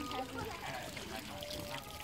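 Water from a garden hose pouring steadily into a small plastic tub, with faint voices in the background.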